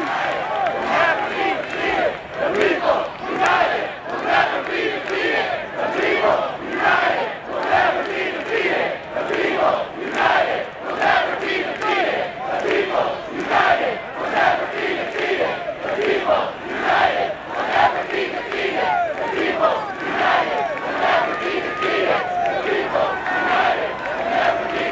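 Large crowd of protesters chanting and shouting together in a steady rhythm, many voices rising and falling as one.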